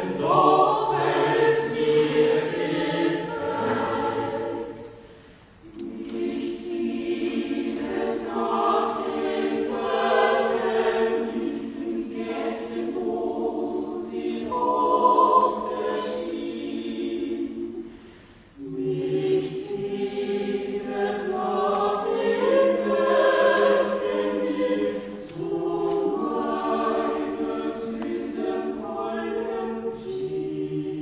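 Small mixed choir of men's and women's voices singing a cappella in harmony. The chords are held in long phrases, with short breaks between phrases about five seconds in and again near eighteen seconds.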